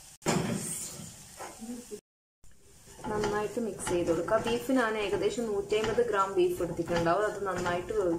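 Brief pan noise from crumbled beef being stirred into frying onion masala in the first second, then a break of silence. From about three seconds in, a voice is talking.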